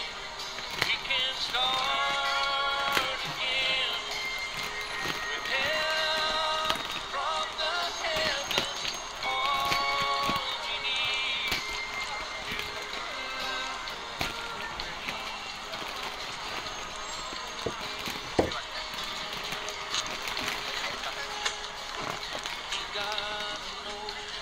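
Background music with a vocal melody, strongest in the first half. Beneath it are the crinkle of plastic grocery bags and the snips of kitchen scissors cutting them open, with one sharp knock about 18 seconds in.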